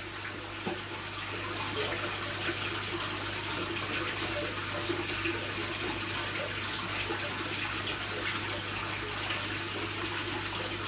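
Water splashing steadily into an aquarium as it is refilled, with a thin stream poured slowly from a plastic jug trickling into the surface. A low steady hum runs underneath.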